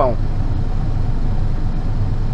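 Truck's diesel engine idling, heard from inside the cab as a steady low rumble.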